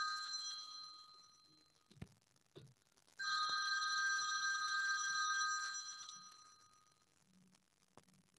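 A phone ringing: a steady multi-tone ring fades out in the first second or two, then a second ring starts about three seconds in and fades away a few seconds later. A couple of faint clicks fall between the two rings.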